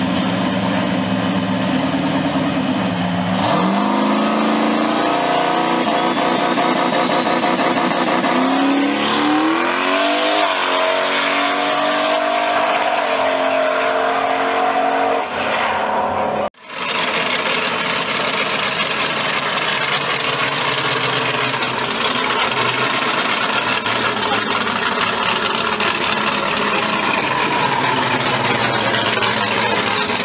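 A turbocharged drag-racing car idles at the line, then launches about three seconds in and accelerates hard down the strip. Its engine pitch climbs in steps through the gears under a high turbo whistle that rises and then holds. After an abrupt cut about halfway through, another engine runs steadily.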